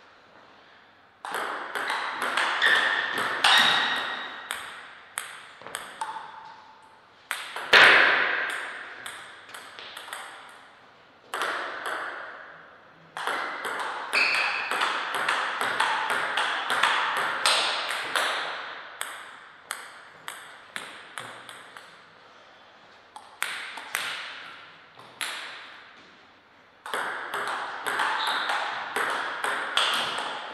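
Table tennis rallies: the celluloid ball clicks off paddles and table in quick back-and-forth runs, each rally lasting a few seconds with short pauses between points. The clicks ring in a hard-walled room, and a few brief squeaks come in among them.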